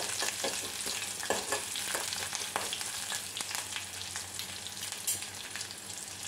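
Green and dried red chillies with chopped aromatics sizzling in hot oil in a metal kadai, while a metal spoon stirs and scrapes, clicking against the pan. The clicks of the stirring thin out toward the end, leaving the steady sizzle.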